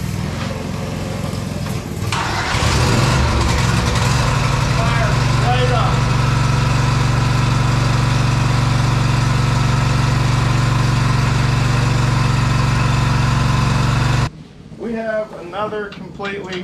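Cub Cadet lawn tractor's V-twin engine, started from a lithium jump pack in place of its dead battery. It comes up to full running about two seconds in and then runs steadily. The sound cuts off suddenly shortly before the end.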